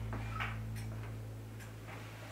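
Grandfather clock ticking steadily, over a low steady hum.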